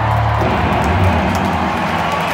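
Live indie rock band heard through a stadium PA from the stands, with guitar and bass chords ringing. The bass note changes about half a second in, as the song reaches its closing chords.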